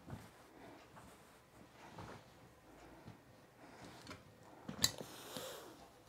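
Quiet handling of linen fabric, with faint rustles as it is smoothed flat by hand. About five seconds in comes a sharp click as the heavy iron is taken up, followed by a brief soft hiss.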